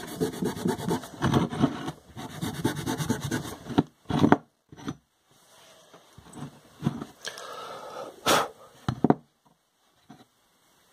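Green abrasive pad scrubbed in rapid back-and-forth strokes over a small cast silicon bronze skull, buffing the metal's highlights back through a dark liver of sulfur patina. The scrubbing stops about four seconds in. After that the skull is handled on the wooden bench, with a few knocks, the loudest near the end.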